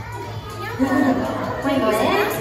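A voice calling out a count, "one, two, one", over room chatter and faint background music.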